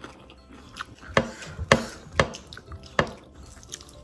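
A person chewing a mouthful of rice and food close to the microphone, with four sharp mouth clicks, the first three about half a second apart.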